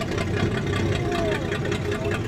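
A vehicle engine idling steadily with an even low rumble.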